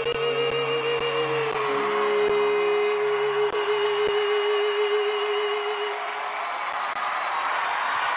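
A boy's singing voice holding the long final note of a ballad with light vibrato over a string backing track. The note ends about six seconds in, as audience cheering and applause swell.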